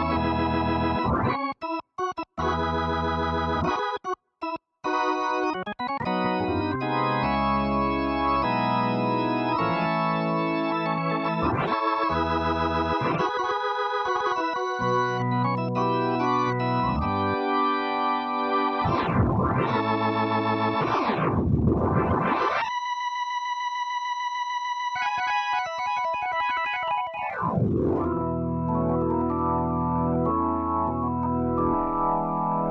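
Nord Electro 5D organ with two drawbars, played through a Leslie rotary-speaker pedal set to its 122A model, giving a swirling rotary-speaker sound. Chords start with a few short stabs, then sustained playing with a glissando down and back up about 19 seconds in. A single high note is then held alone and warbles before full chords return near the end.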